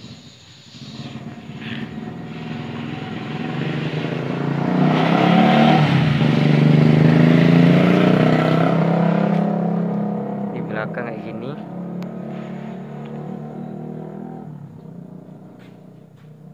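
A motor vehicle's engine passing by: it grows louder over the first few seconds, is loudest around the middle, then slowly fades away.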